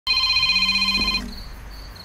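Basic mobile phone ringing with a high, rapidly fluttering electronic tone that cuts off a little over a second in as the call is answered; faint cricket chirps follow.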